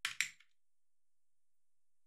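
Two sharp computer-keyboard key clicks in quick succession right at the start, then silence.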